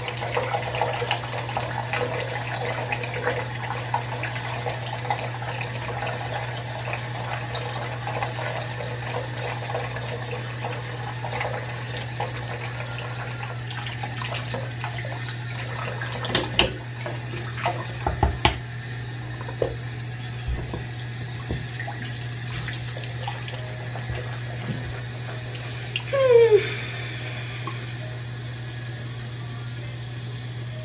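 Bathroom tap running steadily into a sink over a steady low hum, with a toothbrush scrubbing teeth at first. A few knocks come about two-thirds of the way in, and a short hummed sound near the end.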